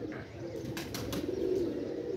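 Domestic pigeons cooing in a steady low murmur, with a few quick wing flaps about a second in as some take off.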